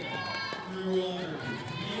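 Mostly voices: quieter speech and overlapping crowd voices in a large hall, with no distinct impact or skate sound standing out.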